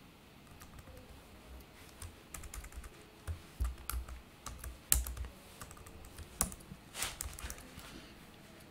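Computer keyboard typing: irregular keystrokes starting about two seconds in, with a few louder key presses near the middle and toward the end.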